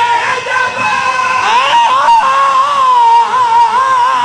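A man's voice through a loud microphone system, chanting a melodic recitation that glides upward and then holds long, wavering notes. It is typical of a zakir's sung delivery at a majlis.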